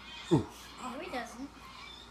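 A person's voice making wordless sounds: one loud, sharply falling vocal sound, then a short stretch of wavering, sing-song vocalizing.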